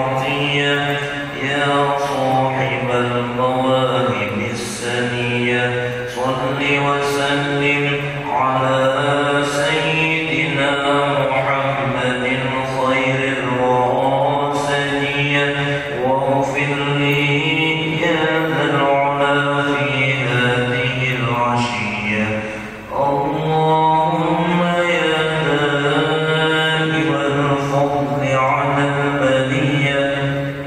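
Congregation of many voices chanting an Islamic prayer recitation together in unison, in long, continuous, melodic phrases. There is a short break for breath about two-thirds of the way through.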